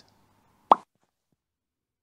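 A single short pop sound effect about two-thirds of a second in, with dead silence around it.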